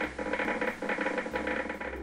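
EMG machine's loudspeaker crackling irregularly with end-plate spikes picked up by a concentric needle electrode in the muscle's motor end-plate zone, a sound like oil sizzling in a frying pan.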